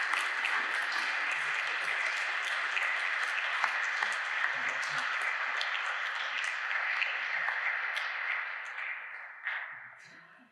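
Audience applause: many hands clapping steadily, dying away near the end.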